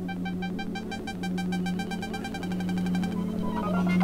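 Electronic music: a synthesizer pattern of rapid, evenly repeating pulsed notes over a steady low drone, gradually getting louder, with a rising run of notes near the end.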